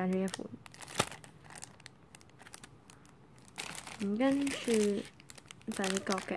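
Clear plastic packaging bags crinkling and crackling as they are handled, with a sharp click about a second in.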